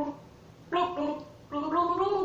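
A woman gargling a mouthful of water while voicing a song's tune through it, in short phrases with gliding pitch: a brief one about two-thirds of a second in, then a longer one near the end.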